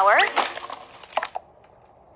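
Flour pouring from a sack into a mixing bowl, a soft rustling hiss lasting about a second that stops suddenly.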